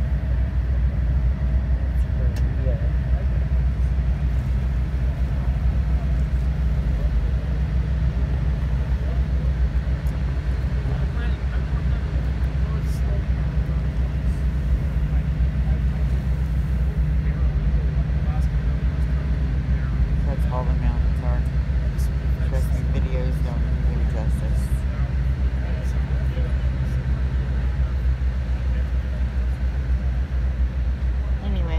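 Steady low hum of a boat's engine running.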